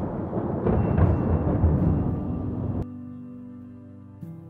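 A loud low rumble of thunder over soft sustained music, cutting off suddenly about three seconds in.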